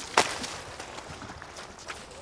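A child landing belly-first on a wet plastic backyard water slide: one sharp, loud slap just after the start, then a steady outdoor hiss with a fainter tick near the end.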